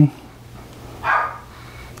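A dog barks once, about a second in.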